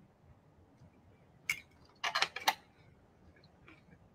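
A few short, faint clicks and taps from eating with a fork and chewing: one about one and a half seconds in, then a quick cluster of several about two seconds in.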